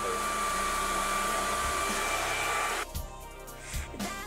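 Hand-held blow dryer running steadily with a high whine, cutting off suddenly about three seconds in; background music follows.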